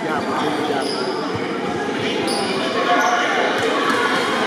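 Overlapping voices chattering in a gymnasium that echoes, with a few scattered basketball bounces on the hardwood floor.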